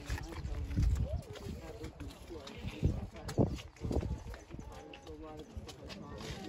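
Indistinct voices of people talking, with a few low thumps about a second in and again around three to four seconds in.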